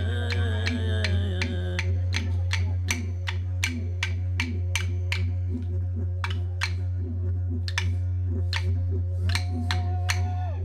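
Aboriginal Australian song: a didgeridoo drone runs unbroken under wooden clapsticks struck in a steady beat of about three a second. A man's singing voice carries over them for the first two seconds, and a held sung note begins near the end.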